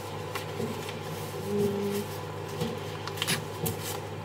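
A sheet of paper rustling and being creased as it is folded into a paper airplane, with a few sharp crackles near the end.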